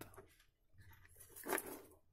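Faint handling noise of a multimeter probe lead and an LED strip coil being moved on a desk, with one louder rustle about one and a half seconds in.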